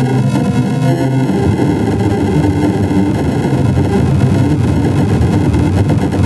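Commercial soundtrack put through a harsh audio effect, coming out as a loud, dense, distorted churning noise with low pitch and a few faint sustained tones that fade in the first second or so.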